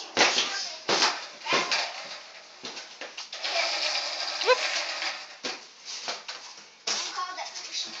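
Skateboard on a concrete floor: several sharp knocks and clacks of the board, and a stretch of steady wheel rolling noise in the middle, with a brief rising squeak.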